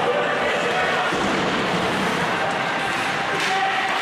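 Steady ice-rink noise during a hockey game, with faint indistinct voices and no distinct impacts.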